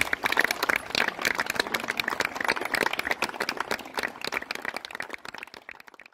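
Applause: many hands clapping, thinning out and fading over the last couple of seconds.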